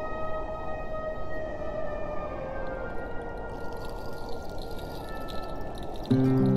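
Slow musical introduction of an Andean huayno: long held flute notes with clear overtones over a steady hissing background, the melody stepping down in pitch about halfway through.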